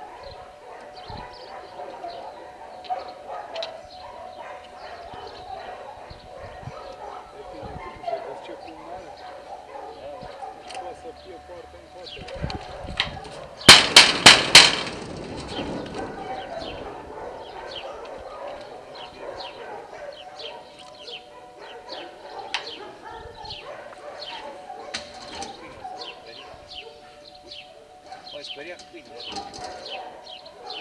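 Four loud, sharp bangs in quick succession on the steel-bar gate, about halfway through, over a low background of distant voices and a steady hum.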